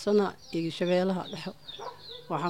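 A woman's voice speaking in short phrases, with faint high bird calls in the background.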